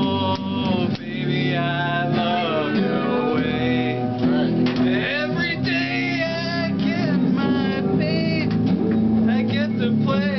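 Electric guitar played through an amplifier: a lead line of sustained notes, many of them bent up and down in pitch.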